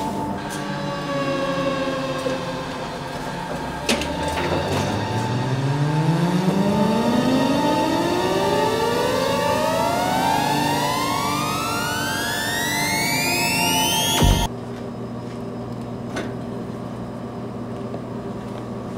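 Suspense film score: a sustained droning chord, then a rising pitch sweep that climbs steadily for about ten seconds and cuts off abruptly, leaving a low steady hum. A couple of sharp knocks sound at the start and about four seconds in.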